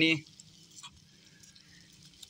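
Faint crackle and sizzle of okra frying in an iron pan over a small wood fire, with a few small ticks. A voice trails off at the very start.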